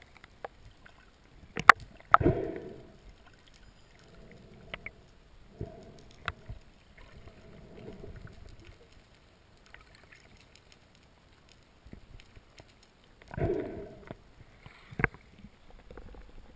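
Water sounds heard through an underwater camera: scattered sharp clicks and knocks over a faint wash, with a short burst of rushing water about two seconds in and another, longer one near the end as the camera comes up to the surface.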